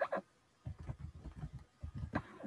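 Faint computer keyboard typing: a quick run of keystrokes lasting a little over a second.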